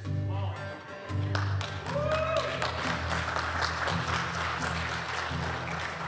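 Congregation applauding, beginning about a second and a half in, over a soft, steady instrumental background.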